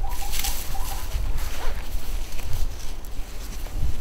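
Rustling and scuffing of a climbing rope, leather gloves and dry leaf litter as the rope is gathered and threaded into a metal figure-eight descender, over a low rumble on the microphone.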